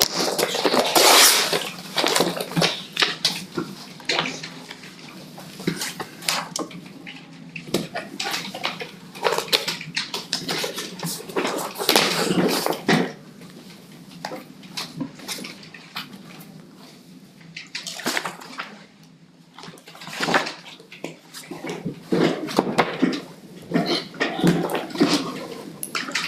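Sheets of paper rustling, shuffling and being handled on a meeting table, in uneven bursts with small knocks and bumps. It is busiest at the start and again in the last few seconds, and quieter a little past the middle.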